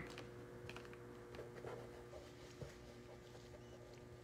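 Faint scratchy rubbing and light taps of a pencil's rubber eraser working on drawing paper.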